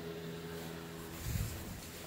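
Room tone: a low steady hum, with a brief low rumble about one and a half seconds in as the handheld camera is moved.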